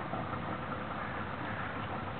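Boat motor idling steadily.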